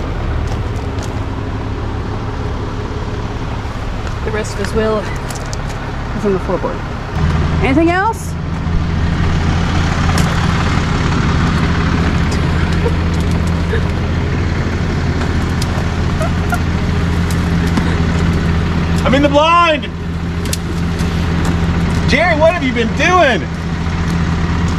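A vehicle engine idling steadily, louder from about seven seconds in, with a few brief voice-like calls over it.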